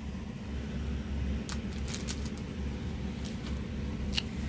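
Steady low background hum with a few faint clicks from items being handled.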